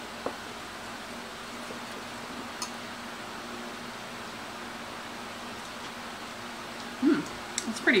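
Dressing being stirred with a small utensil in a ceramic bowl, mostly faint, with a light click of metal on the bowl shortly after the start and another softer one later, over a steady low room hum.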